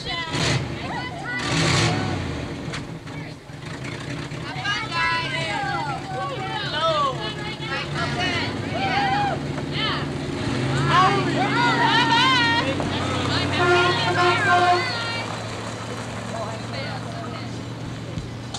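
Old pickup truck's engine running steadily as it tows a loaded hay wagon, with people's voices calling out over it.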